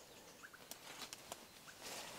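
Faint quiet forest ambience with a few brief, soft chirps and light ticks. Near the end, footsteps begin rustling through leafy undergrowth.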